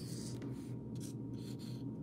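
Dry-erase marker writing on a whiteboard: several short, scratchy strokes as a line and a plus sign are drawn.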